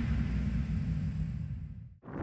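Low rumble of a sports car's engine, with a hiss above it, fading away near the end.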